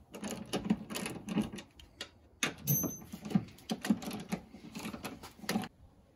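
Hand ratchet clicking rapidly in runs as it spins off a 14 mm nut on the top mount of a front strut, a nut already broken loose. The clicking stops shortly before the end.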